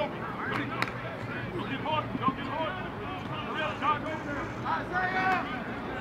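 Players and coaches shouting and calling out across an outdoor football practice field, overlapping voices with no clear words, and a sharp click a little under a second in.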